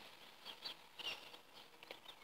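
Quiet outdoor background with a few faint, short high chirps from distant birds.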